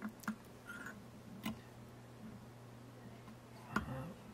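A few light, sharp clicks, four in all and spaced irregularly, from small metal fly-tying tools being handled at the vise as scissors give way to a whip-finish tool, over a faint steady hum.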